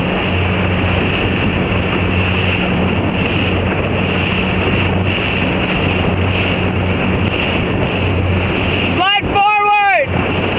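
Wind buffeting the microphone over the steady drone of a motorboat running alongside, with water rushing past. About nine seconds in, a single raised, drawn-out voice call lasts about a second.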